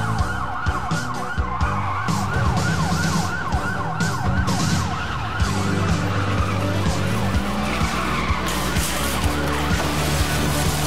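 A police siren yelping in fast up-and-down sweeps for about the first half, then fading, over background music with a steady beat.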